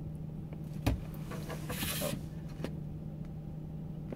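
Inside a car cabin, a steady low hum runs under a sharp click about a second in, followed by a short hissing slide lasting under a second, like an overhead sunroof or its shade being worked from the roof console.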